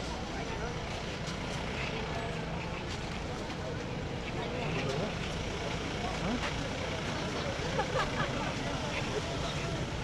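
Street noise with vehicles running and indistinct voices of people nearby, no one speaking clearly.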